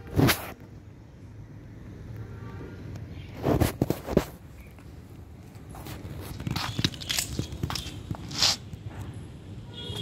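Scattered short knocks and rustles: one just after the start, a cluster of them about three and a half seconds in, and several more through the second half, over a faint steady background.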